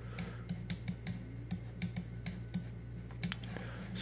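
Irregular light clicking from computer input at the desk, about three or four clicks a second, over a faint steady low hum.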